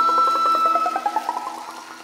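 A live folk band's closing sound rings out: a held high note with a fast rising run of short notes over it, fading away steadily.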